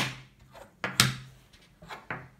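Wooden memory-game discs knocking on a wooden tabletop as they are flipped and set down. Two sharp clacks come about a second apart, with a few lighter taps.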